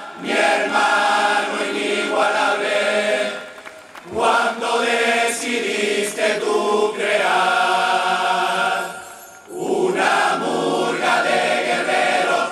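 Carnival murga chorus, many voices singing loudly in unison in phrases, with two short breaks between phrases.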